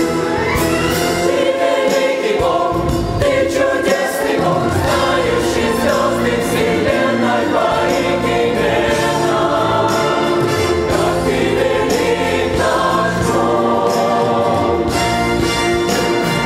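Mixed choir singing a Russian-language hymn of thanksgiving, men's and women's voices together, steady throughout.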